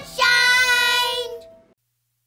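Children's voices singing out one long held note that fades away, then the sound cuts off into silence.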